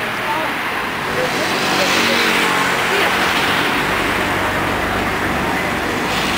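Street traffic: a motor vehicle passes close by, its engine and tyre noise swelling about a second in and fading after the middle, leaving a low engine rumble.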